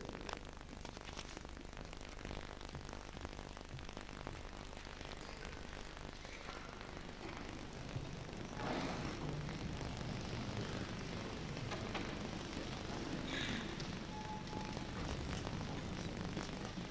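Low room noise of a large hall holding a seated audience, choir and orchestra waiting to begin: a steady hum and faint stirring, a little louder about halfway through, with a brief faint tone near the end.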